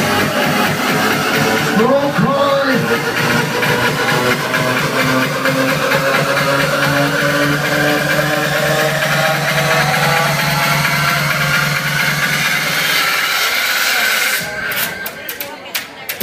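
Loud electronic house music playing over a club sound system, with a steady, repeating bass line. Near the end the track breaks into choppy stop-start cuts and dips in loudness before coming back in.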